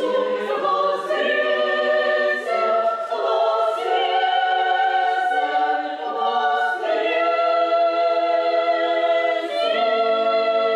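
Women's church choir singing a Russian sacred choral piece a cappella, in long held chords that change every few seconds.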